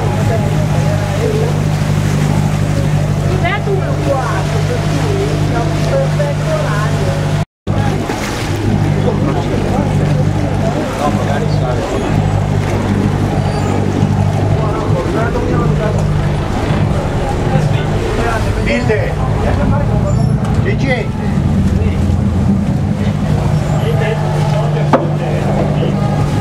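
Ferry engine running with a steady low drone as the boat comes in to a landing stage, with passengers talking over it; the sound drops out briefly about a third of the way in.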